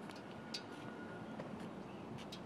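Faint, steady low hum of a car engine idling, with a few light clicks.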